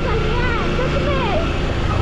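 Kawasaki Ninja 300's parallel-twin engine running as the motorcycle is ridden, under heavy wind noise on the microphone, with a voice talking over it.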